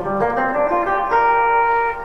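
Semi-hollow electric guitar playing a short B flat major pentatonic lick: a quick run of single notes, then one note held for about the last second.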